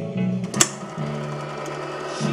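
Old recorded music with a held, stepping bass line, played from an iPod through the Seeburg wallbox's adapter and external speakers. One sharp click about half a second in.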